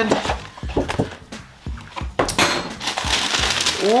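A cardboard shoe box being handled and opened, with paper rustling most strongly in the second half, over a backing track with a steady kick-drum beat about twice a second.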